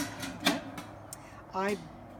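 A stainless steel pot set down into an enamel canning pot, with one sharp metallic clunk about half a second in and a lighter click a little later.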